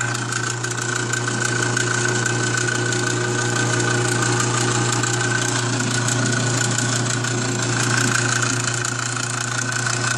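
Repurposed garage door opener's geared-down motor running steadily, turning the paddles of an empty meat mixer through a chain drive: a constant low hum.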